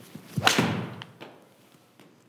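Mizuno MP20 MMC forged six iron striking a golf ball off a hitting mat: one sharp impact about half a second in that dies away quickly.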